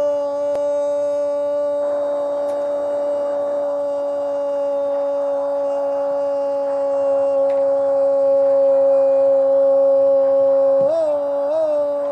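Radio football commentator's drawn-out goal cry: one long 'gooool' held on a single steady high note, wavering upward twice near the end, celebrating a goal just scored.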